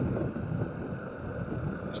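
Honda CG 150 Fan motorcycle running steadily along a dirt road, its engine noise mixed with wind on the microphone.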